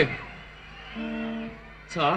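A guitar note held for about half a second, between brief snatches of a man's voice at the start and the end.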